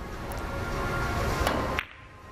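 Carom billiards three-cushion shot: the cue strikes the cue ball and a few sharp clicks of balls colliding follow, the loudest two late on. They come over a rising rush of background noise that cuts off suddenly near the end.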